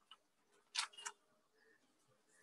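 Two faint, short clicks about a quarter of a second apart, just under a second in, with a tiny tick right at the start, over near silence.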